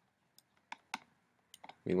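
A few sharp, separate computer mouse clicks, made while selecting options and pressing a button in a dialog box, with a short word of speech starting near the end.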